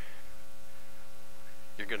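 Steady electrical mains hum: an even buzz made of several steady tones, plainly heard in a pause between a man's words. His voice starts again near the end.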